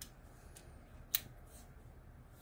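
The driver arm of a Klein Tools Flickblade folding utility knife folding shut into its plastic handle, with one sharp click about a second in as it snaps closed and a fainter click before it.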